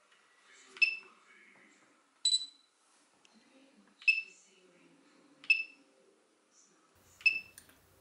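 Five short electronic beeps, about a second and a half apart, with the second one higher in pitch than the others. They come from the DJI Mavic Pro drone and its remote controller, powered on and linked for a function check after an antenna-cable repair.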